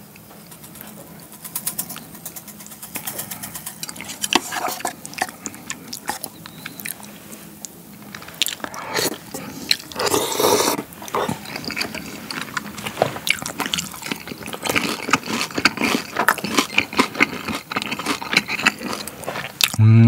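Close-miked eating of cold soy-milk noodle soup (kongguksu): a long, noisy slurp of noodles about halfway through, surrounded by small clicks and wet mouth and chewing sounds.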